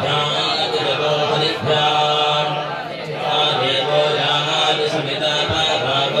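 Several male Hindu priests chanting Sanskrit mantras together into microphones, a continuous recitation broken only by short pauses for breath.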